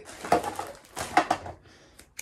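Rustling and light knocks of packaged items being handled and moved on a desk, in a few short irregular bursts, with some soft indistinct murmuring.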